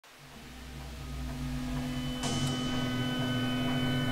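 Low droning hum of steady tones fading in and growing louder, with a short burst of hiss a little over two seconds in.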